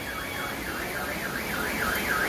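Car alarm sounding from a flood-stranded car: a tone that swoops up and down about three times a second, over the steady rush of floodwater.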